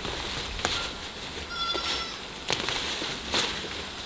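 Leafy vines rustling and stems snapping as they are pulled up by hand, with three sharp crackles: one near the start, then two in the second half. Midway a short, steady-pitched animal call sounds briefly.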